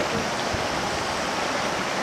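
River water rushing steadily over rocks and through shallow rapids.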